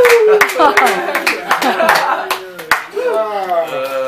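A small audience clapping, with several voices calling out and talking over it. The clapping thins out about halfway through while the voices go on.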